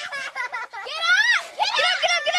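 A young girl's high-pitched cries after being butted by a sheep: short broken sounds at first, then a long wavering wail about a second in and more cries near the end.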